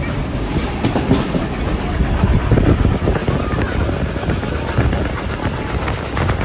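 Carriage of a steam-hauled heritage train running along the track, with a steady rumble and irregular clicks of the wheels over the rails.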